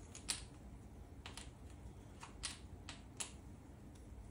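Board game order tokens clicking as they are handled and set down on the board: about six light, sharp clicks spread out, the loudest near the start.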